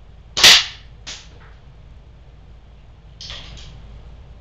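.177-calibre air gun firing a pellet at the target: one sharp crack about half a second in and a smaller sharp knock just after. A short, softer clatter follows near the end.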